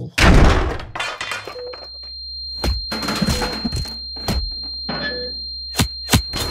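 Sound-effect crash with breaking as a body is slammed into a wall, then a steady high-pitched ringing tone over a low drone, broken by a few sharp bangs a second or two apart.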